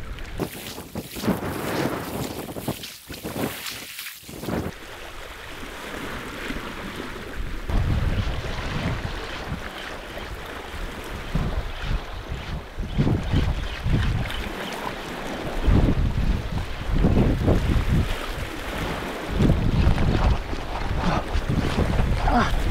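Wind buffeting the microphone in gusts over the wash of sea waves, the low rumbling gusts growing stronger about a third of the way in.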